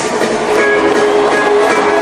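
Live band music on a concert stage: a steady held chord from the band between sung lines.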